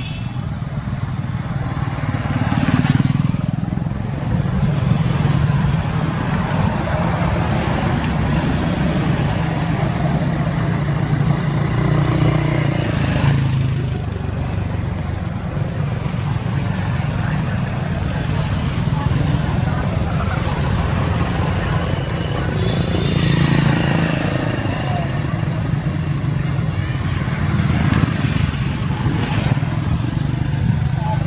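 Roadside ambience: steady motor traffic noise that swells as vehicles pass, about three times, with people's voices in the background.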